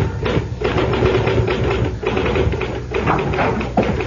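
Typewriter being typed on: quick, irregular clacking key strikes.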